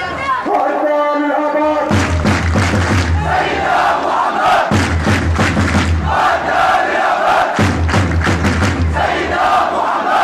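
Large crowd of protesters chanting slogans in unison. A single voice leads for about the first two seconds, then the crowd's chant comes back in repeated phrases about every three seconds, with a regular beat.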